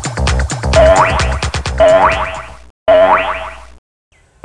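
Comic boing-style sound effect played three times about a second apart, each a held tone with rising sweeps that fades away. At the start, the last beats of a fast dance-music track.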